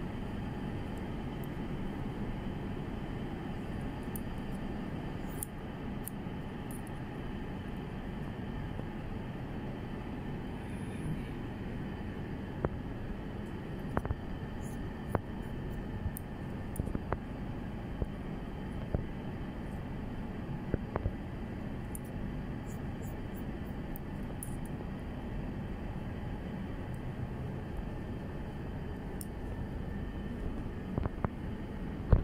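Haircutting scissors snipping through hair in scattered short clicks, some in quick runs, over a steady background hum.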